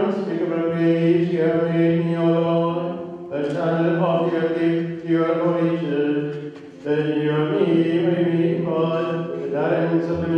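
A man chanting a liturgical ordination prayer in long, sustained notes that move slowly in pitch, pausing briefly for breath twice.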